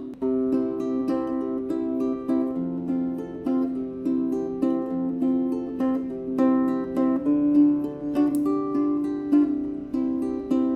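Emerald Guitars Synergy harp ukulele played acoustically, unplugged: a fingerpicked melody of plucked notes, strung with a high G string. From a few seconds in, low harp strings ring on under the melody.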